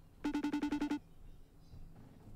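Phone ringing on an outgoing call: a short electronic trill of about eight rapid beeps lasting under a second.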